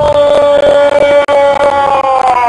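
A football commentator's drawn-out goal cry: one long shout held on a single high note that breaks off near the end.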